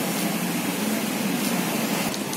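Steady background noise with a constant low hum, and no voices.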